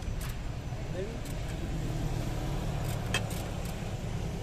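A steady low engine hum with a few sharp metal clicks of a wrench on a throttle-body bolt, a pair of them a little after three seconds in.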